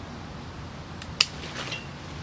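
Hand pruning shears snipping a side branch off a willow cutting: one sharp click a little over a second in, followed by a faint rustle.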